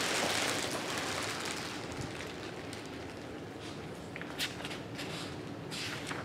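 Plastic packaging rustling and crinkling as it is handled, strongest at first and then fading, with a couple of short, sharper crinkles near the end.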